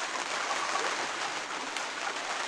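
Steady rain falling on the sailboat's deck and cabin top, heard from inside the cabin as an even hiss.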